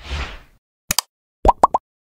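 Sound effects of an animated 'like' button. A short soft whoosh opens it, then two quick mouse clicks. About halfway through come three fast bloop pops, each rising in pitch.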